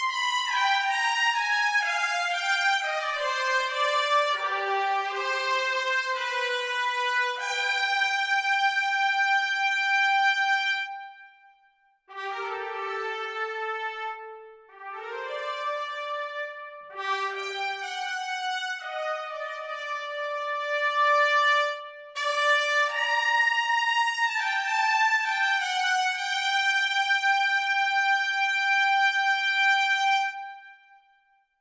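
Sampled trumpet section (Spitfire Audio's Abbey Road One Thematic Trumpets, four trumpets recorded in unison) playing legato melodic phrases, the notes joined smoothly one into the next. The line breaks off briefly about halfway through, and the last phrase ends on a long held note.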